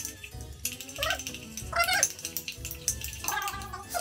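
A metal teaspoon stirs and clinks in a ceramic mug, blending pumpkin, honey and spices, over eerie background music with a steady beat. Three short cat-like meows sound at about one, two and three-and-a-half seconds in, and they are the loudest sounds.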